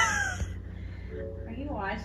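A loud, harsh cry, falling in pitch, fades out within about half a second; then a voice starts speaking near the end.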